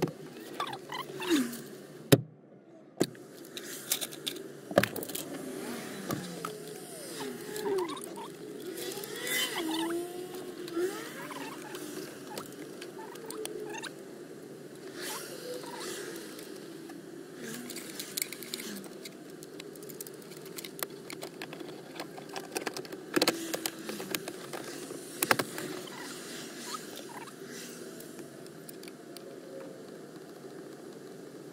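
Plastic dashboard trim being handled and fitted back into place: scattered clicks and knocks of hard plastic, the sharpest about two seconds in, with brief squeaks of plastic rubbing on plastic.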